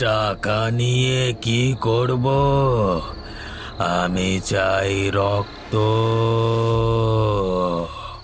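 A man's voice chanting in a sing-song way, in several phrases of long held notes that bend up and down, with short breaks between them.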